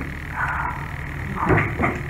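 A pause in a man's talk: low room noise, with a brief faint vocal sound or breath about one and a half seconds in.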